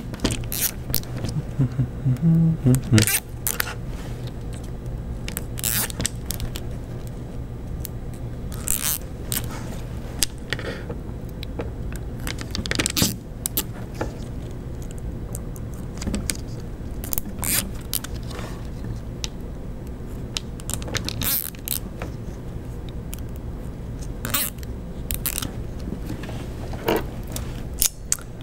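Nylon zip ties being threaded and pulled through their heads around linear bearings on acrylic plates: irregular plastic clicks and short ratcheting rattles, over a low steady hum.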